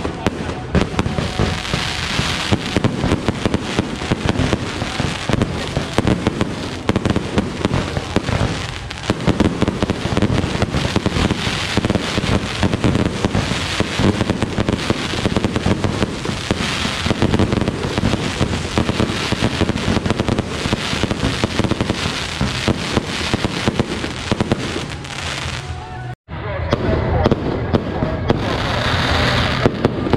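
Aerial fireworks display: a continuous barrage of launches, bangs and crackling bursts, broken by a momentary silence near the end.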